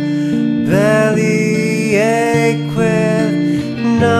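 Clean electric guitar, a Fender Stratocaster, picking a gentle arpeggiated chord part, with a wordless sung line that scoops up into three long held notes.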